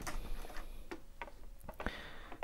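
Faint, irregular light clicks and taps of a clear acrylic water block being handled and held against the metal frame of a PC case, with a slightly sharper tap near the end.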